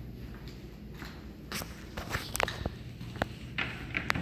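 Footsteps on a wooden parquet floor: a handful of sharp, uneven steps and knocks starting about a second and a half in.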